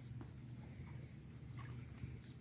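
Crickets trilling faintly in a thin, high, pulsing line over a low steady hum, with a few faint clicks.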